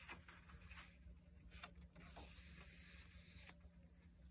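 Faint rustle of a paper page being turned over and laid down in a handmade journal, with a few soft ticks of handling, over a low steady hum.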